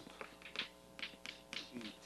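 Chalk tapping and scraping on a blackboard as words are written: a string of faint, sharp, irregular taps.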